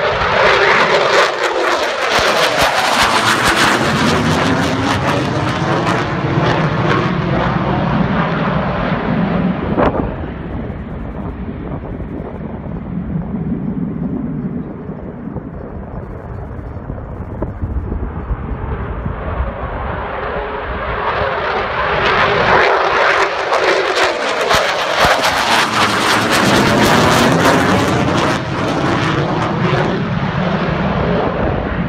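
Fighter jets' engines passing low overhead, loud, with a sweeping rise and fall in tone. The first, an F-15, cuts off abruptly about ten seconds in to a quieter distant rumble. A second jet then builds up and passes overhead again near the end.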